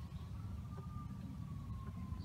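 Faint distant siren: one long tone that rises slightly and falls back, over a low rumble.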